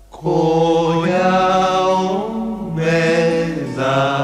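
Recorded Japanese pop music: a group of voices, low and male-sounding, sings sustained wordless harmony chords that swell in about a quarter second in, right after a quiet passage, with the pitches sliding between chords.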